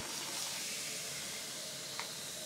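Continuous-mist trigger spray bottle giving one long, steady hiss of fine water mist, running on longer than intended.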